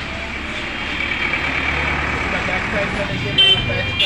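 Steady street traffic noise with voices in the background, and a short, loud horn-like tone near the end.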